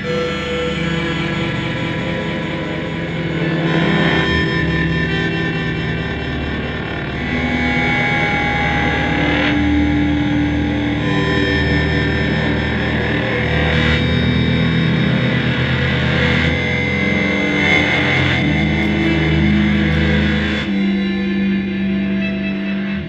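Electric guitar played through a pedalboard of effects, building layered, sustained, distorted tones into a dense drone. New notes swell in every few seconds, and near the end the upper layers drop away, leaving a low held tone.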